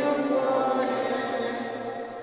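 Slow liturgical chant: voices singing a hymn verse in long held notes, trailing off near the end.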